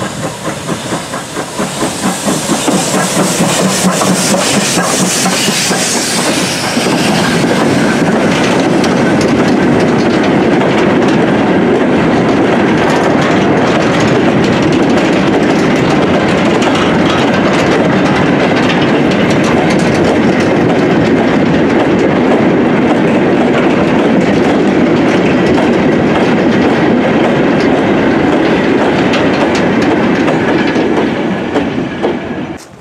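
BR Standard Class 2 steam locomotive 78018 passing under steam, its exhaust beating quickly with a hiss of steam for the first several seconds. Then a long rake of steel mineral wagons rolls by with a steady rumble and the clickety-clack of wheels over the rail joints.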